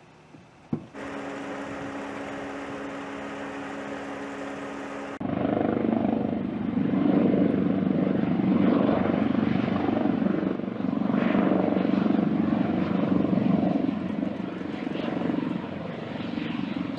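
A helicopter flying past, its rotor and turbine loud with a pulsing throb from about five seconds in. Before that there is a quieter steady droning hum.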